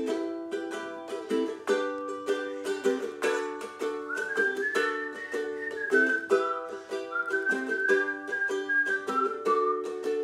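Ukulele strummed in a steady rhythm of chords, with a whistled melody coming in over it about four seconds in and running until near the end.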